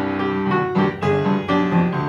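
Upright piano played in boogie-woogie style, with notes and chords struck in a steady, driving rhythm several times a second.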